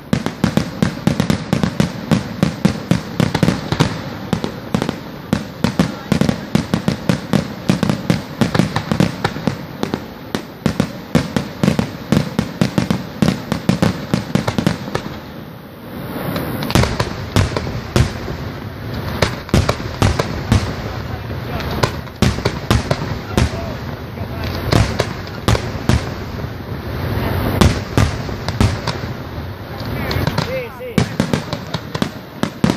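Aerial fireworks display: a rapid, continuous barrage of bursting shells and crackling, many bangs a second. A brief lull about halfway through, then the barrage resumes.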